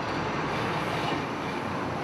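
Steady city street traffic noise: a continuous wash of passing vehicles.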